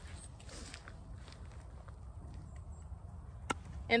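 Hand pruners snipping a small peach-tree twig once with a sharp click about three and a half seconds in, after faint rustling of twigs, over a low steady rumble.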